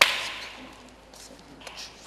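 A single sudden, sharp crack at the start, like a whip or a whoosh effect, fading away over about half a second.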